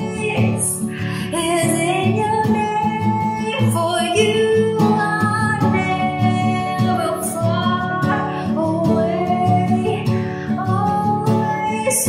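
A woman singing a worship song over acoustic guitar accompaniment.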